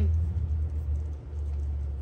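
A pause in speech filled by a steady low rumble that dips briefly a little after a second in.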